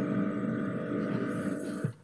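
A steady electrical buzz with many even tones, cutting off suddenly just before the end.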